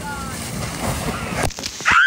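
Water rushing and splashing as a person slides down an inflatable water slide into its splash pool, with voices in the background. Near the end a loud high-pitched cry rises and falls.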